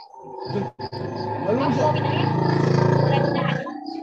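Voices talking over one another through open video-call microphones, with a loud, rough, steady rumble behind them that builds and then stops shortly before the end.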